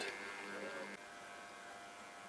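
Faint steady electrical hum over low room tone, dropping slightly about a second in.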